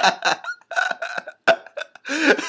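A man and a woman laughing hard in short, breathy bursts with brief gaps between them.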